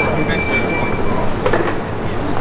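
Busy street ambience of a low, steady rumble with crowd chatter, and a thin, steady high-pitched whine that cuts off about a second in.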